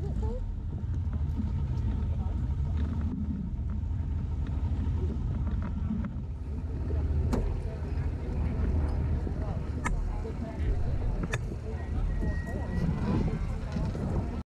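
Open-wheel race car's engine idling with a steady low rumble, with a few sharp clicks and faint voices.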